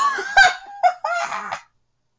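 A woman laughing hard in several high, pitched bursts, breaking off a little before the end.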